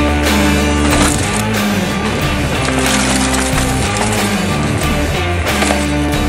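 Rock music with guitar playing between sung lines, with sustained chords that change every second or so.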